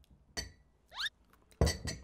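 A ridged glass bowl clinking as it is handled while the last dried fish is picked out of it: a light knock, a short rising squeak, then the loudest clink near the end.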